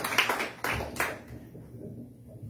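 Hand clapping: a few sharp claps keep the beat going, then the clapping fades out about a second and a half in.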